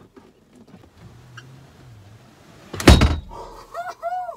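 Rear bench seat of a VW Transporter camper being folded down into a bed: quiet rubbing and handling sounds, then one loud thunk about three seconds in as the seat drops flat.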